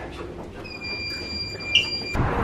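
A lift's steady high electronic beep, starting about half a second in and held for about a second and a half, over a low rumble in the cabin.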